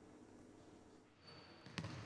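Near silence: faint room tone, broken by a single brief knock near the end.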